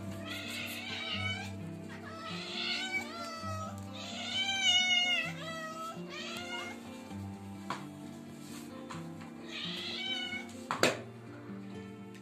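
Hungry cats meowing for food at feeding time: about five drawn-out, pitch-bending meows, the loudest in the middle, over steady background music. A single sharp knock comes a little before the end.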